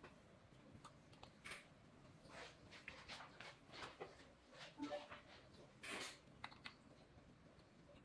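Faint, scattered clicks and rustles of parts and tools being handled while assembling an electric unicycle.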